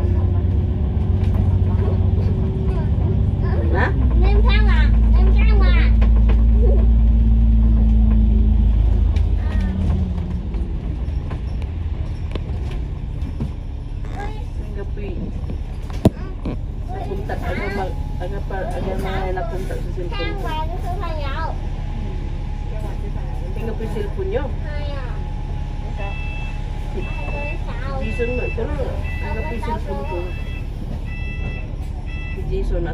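Double-decker bus's diesel engine heard from the upper deck, accelerating with a rising drone that is loudest from about four to nine seconds in, then running at a steadier cruise. There is a single sharp knock about sixteen seconds in, and a regular repeating beep near the end.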